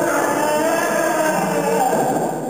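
Several voices singing long held notes whose pitches waver slowly, in a contemporary vocal ensemble piece.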